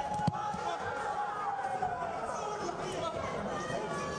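Arena crowd chatter and calling around a boxing ring, with one voice holding a long call that falls in pitch about two seconds in. There is one sharp thud just after the start.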